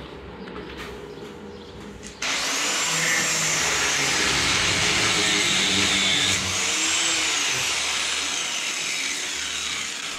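Angle grinder cutting steel reinforcement, throwing sparks. It starts suddenly about two seconds in and runs loudly until near the end, its high whine rising and falling twice.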